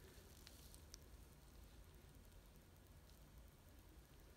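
Near silence: room tone with a faint low hum and two faint ticks in the first second.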